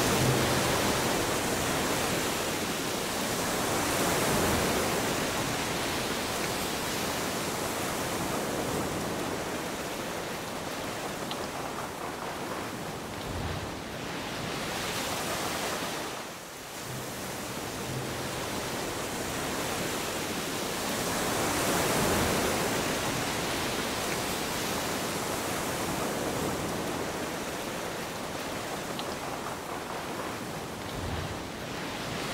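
Rushing underwater noise of surf breaking and surging over a shallow reef, swelling and easing every few seconds, with a brief drop about sixteen seconds in.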